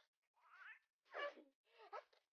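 A young baby cooing: three short, soft coos with gliding pitch, the middle one the loudest.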